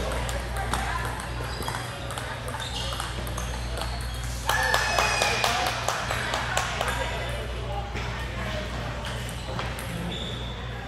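Table tennis balls clicking off paddles and tables, with several tables playing at once, over people's voices that get louder for a couple of seconds around the middle, and a steady low hum underneath.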